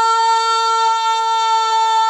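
A single long note held steady in pitch on a wind instrument, rich in overtones and loud, from the play's musical accompaniment.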